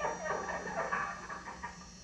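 A man laughing in short, breathy bursts, played back through a television speaker.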